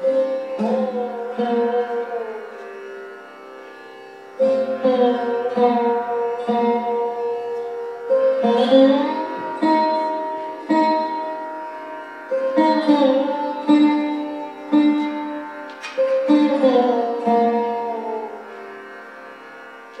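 Sarod played solo in a slow, unaccompanied alap: single plucked notes, a second or more apart, that ring on with many overtones and slide smoothly up and down in pitch between notes, with no drum.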